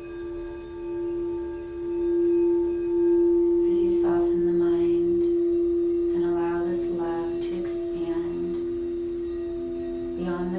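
Quartz crystal singing bowl sung by circling a wand around its rim: one steady pure tone that swells about two seconds in and holds. From about four seconds in, a low voice sounds in short phrases over it, and a second, lower steady tone joins near the end.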